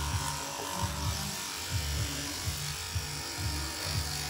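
Electric shearing handpiece cutting alpaca cria fleece under the neck and between the front legs. Its hum comes and goes unevenly as the cutter works.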